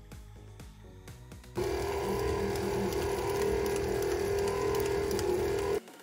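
Stand mixer with a wire whisk attachment running, a loud steady motor hum that starts suddenly about a second and a half in and cuts off near the end, over background music.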